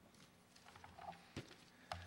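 Near silence: room tone with a few faint taps and clicks from handling at a lectern, the two sharpest about halfway through and near the end.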